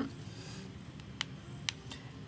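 Two short, sharp clicks about half a second apart, from a laptop's keys or trackpad being worked, over a faint steady background hiss.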